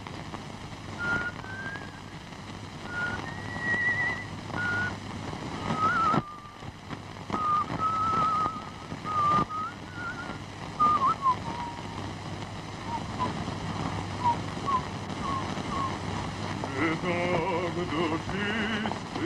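A person whistling a slow tune, one pure note at a time, some notes held with a waver and some sliding, ending in a run of short, falling notes. A voice comes in near the end.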